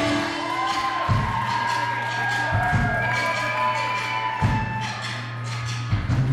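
Live rock band playing: held guitar chords over a sustained bass note, with a few scattered drum hits.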